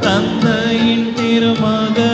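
Church music: a hymn sung over instrumental accompaniment, with long held notes.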